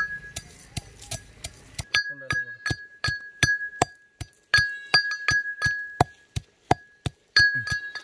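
An iron pestle pounding black peppercorns in an iron mortar, about three to four ringing clinks a second. Each blow leaves the mortar ringing on one steady high note.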